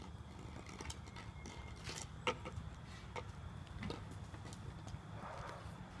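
Quiet outdoor background: a low steady rumble with a few faint, scattered taps, the clearest a little past two seconds in.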